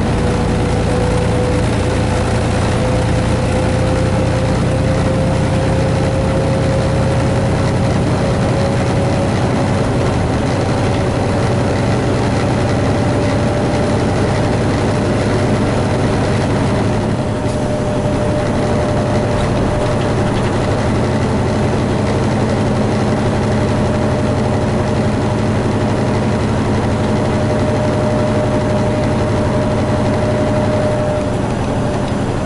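Semi truck's diesel engine and tyre noise heard inside the cab while cruising on the highway, steady throughout, with a whine that climbs slowly in pitch as the truck gathers speed. The level dips briefly a little past halfway.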